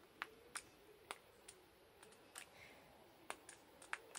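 Faint, scattered small plastic clicks, about eight at irregular intervals, as a liquid foundation bottle is handled: its cap being worked off and its pump being pressed.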